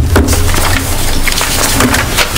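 Sheets of paper being shuffled and handled on a table close to a microphone: scattered rustles and light clicks and knocks over a steady low hum.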